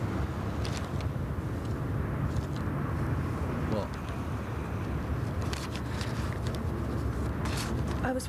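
Steady low road and engine rumble of a car cruising on a motorway, heard from inside the cabin, with a few faint clicks or rustles.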